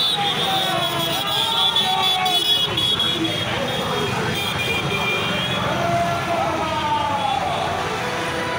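A convoy of motorcycles, scooters and cars passing close by on a road, their engines running, amid people's voices in the roadside crowd.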